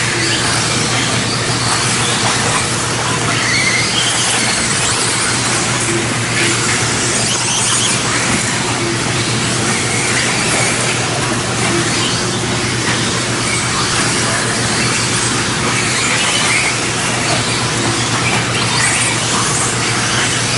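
Several 1/10-scale electric 2WD modified-class buggies racing, their motors and gear drivetrains whining in short rising and falling sweeps as they accelerate and brake, over a steady low hum.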